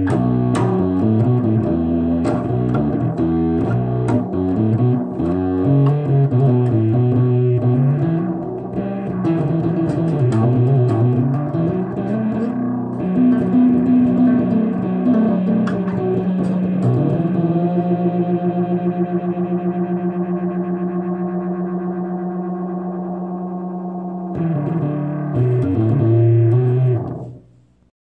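Five-string acoustic bass guitar played solo. A busy run of low notes gives way to a long held chord that wavers quickly and slowly dies away, then a short final phrase that stops just before the end.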